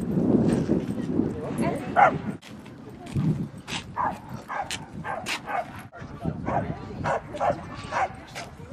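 Dogs barking and yipping in short, repeated calls, over a low rumble in the first two seconds.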